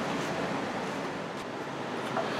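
Steady, even hiss of an electric fan running, with no other distinct sound.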